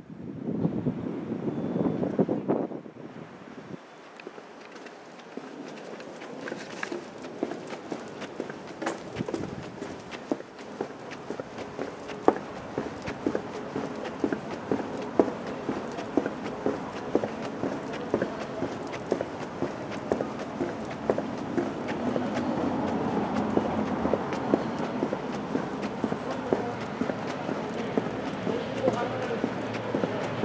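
Footsteps on a paved alley, walking at a steady pace, each step a sharp tap over a continuous murmur of background sound.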